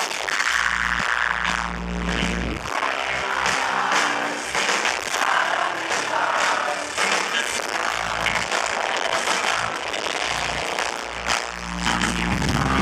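Live post-hardcore rock band playing: electric guitars, bass and drums, loud and continuous, recorded from within the crowd.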